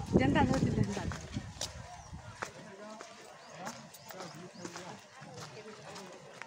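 Voices of people chatting while walking, with wind rumbling on the phone's microphone for the first couple of seconds and scattered light clicks.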